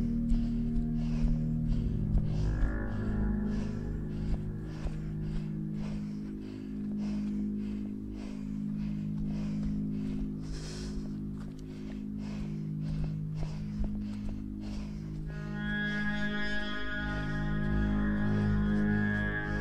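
Background music of sustained low, drone-like tones, with a brighter, higher layer of held notes coming in near the end.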